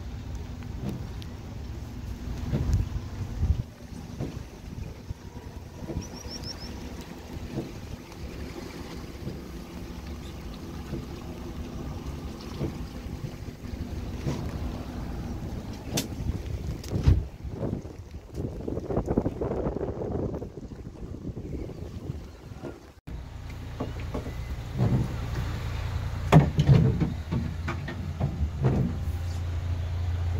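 Small boat's engine running at low speed, with wind gusting on the microphone. About two-thirds of the way through the sound changes abruptly to a steadier, deeper hum.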